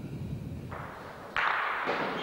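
A bocce shot strikes, then the spectators in the hall clap: noise builds about two-thirds of a second in, and a sudden loud burst of applause starts about a second and a half in.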